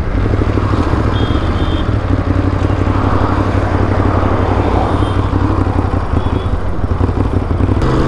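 Ducati Monster's L-twin engine running steadily as the motorcycle rides along at road speed, with wind rush over the microphone.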